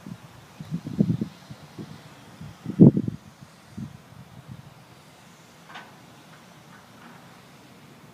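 Wind buffeting an outdoor microphone in irregular low gusts, the strongest about three seconds in, settling to a faint steady background.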